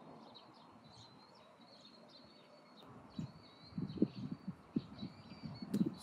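Small birds chirping faintly and repeatedly, a thin high-pitched twittering, with irregular low rumbles in the second half.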